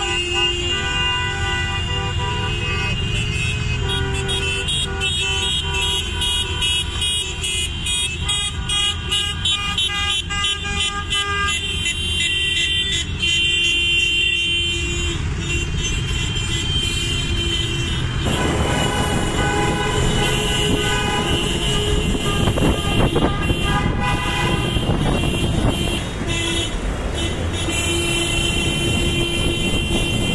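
Car horns honking over and over from a convoy of cars and motorbikes, several horns sounding at once and overlapping, over the running of engines and traffic. The mix changes about eighteen seconds in.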